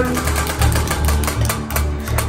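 Spinning prize wheel, its flapper ticking rapidly against the pegs around the rim, over a low music beat.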